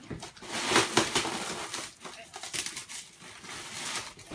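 Plastic wrap and paper packaging crinkling and rustling as it is pulled off a mirror, in irregular crackles with a few sharper bursts.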